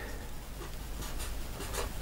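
Red felt-tip marker writing on paper: faint scratching of a few short pen strokes as a comma and the number 10 are written.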